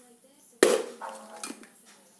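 Spring-loaded cable cutters being handled over a plastic toolbox of metal wrenches and bolts: one sharp clack about half a second in, then a few lighter clicks.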